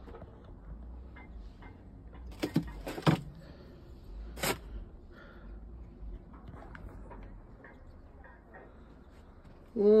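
A few sharp clicks or knocks, the loudest about two and a half, three and four and a half seconds in, over a faint low rumble.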